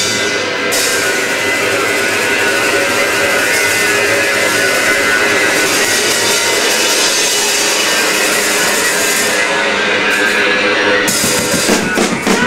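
Live rock band playing loud, with a pounding drum kit, cymbals and electric guitar.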